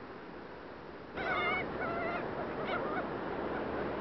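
Gulls calling: a wavering, high-pitched cry about a second in, a second cry soon after and a short one near the end, over a steady rush of noise.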